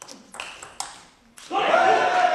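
Table tennis ball being hit back and forth in a rally, a sharp click from bat or table about every half second. About one and a half seconds in, a loud, long shout as the point ends.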